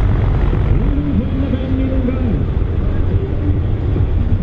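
Scania 114 truck's diesel engine running hard under load as it drags a weight-transfer pulling sledge, a loud, steady, deep drone.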